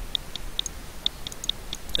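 Light, irregular clicking of a computer mouse, about nine clicks in two seconds.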